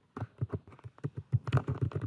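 Typing on a computer keyboard: a quick run of keystrokes that starts a moment in.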